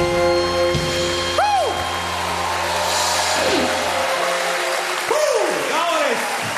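A sustained electric guitar chord rings out at the end of a live rock song. The low bass under it stops about four seconds in. Several short rising-then-falling whoops come from the audience over it, and applause begins near the end.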